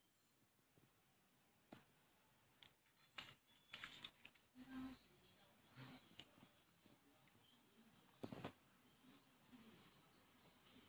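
Faint, scattered taps and rustles of a card folder and its plastic-sleeved stamp sheet being handled, with a slightly louder double rustle about eight seconds in.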